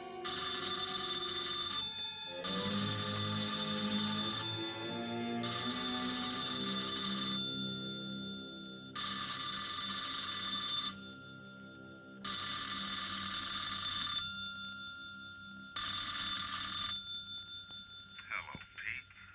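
A wall-mounted telephone's bell ringing six times, each ring lasting one to two seconds with short pauses between, over dramatic orchestral film music; the last ring is shorter.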